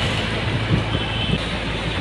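Steady road and traffic noise heard from a moving bicycle, with wind rumbling on the microphone.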